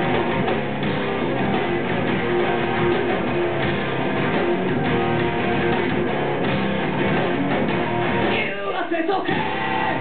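Rock band playing live, electric guitars strumming loud and dense over bass and drums. Near the end the bass and drums drop out for under a second, a break in the song, before the band comes back in.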